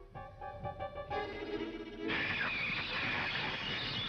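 Cartoon orchestral score: short, separate notes, then about halfway through a louder, busier full-orchestra passage.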